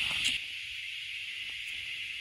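Steady high-pitched chorus of insects, one unbroken even drone.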